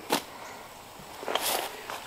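Climbing rope being handled: a short click just after the start, then a brief rustle of rope through the hands about a second and a half in.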